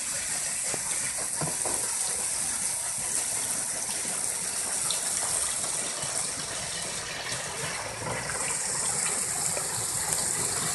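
Steady gushing and splashing of water pouring off the paddles of a turning wooden backshot waterwheel into the tailrace below.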